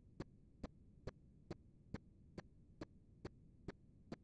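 A steady run of short sharp clicks, a little over two a second and evenly spaced, over a faint low hum.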